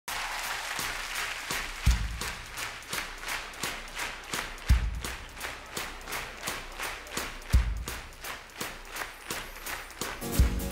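Studio audience clapping in unison, about three claps a second, with a deep thump about every three seconds.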